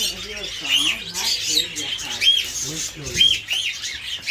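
Caged pet birds in a market calling, with one short rising-and-falling chirp repeated many times, about once or twice a second.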